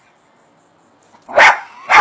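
A dog barking twice, about half a second apart, in the second half.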